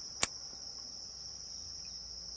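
A steady, high-pitched insect trill, with a single sharp click about a quarter of a second in.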